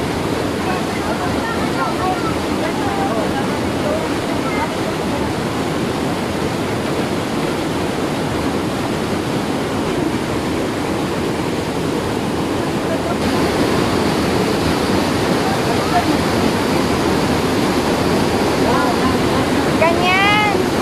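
Waterfall: water pouring over rocks close by, a loud, steady rush that gets slightly louder about 13 seconds in. Faint brief calls sound over it, with a short rising call right at the end.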